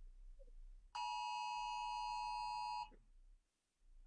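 Phone emergency alert attention tone from the nationwide FEMA alert test: one steady, multi-pitched beep just under two seconds long that starts about a second in and cuts off sharply.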